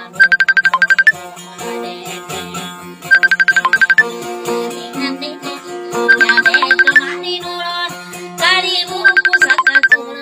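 Instrumental passage of Maranao dayunday music on an amplified acoustic guitar, with no singing. A fast run of repeated high notes, about ten a second, comes back roughly every three seconds over held low notes.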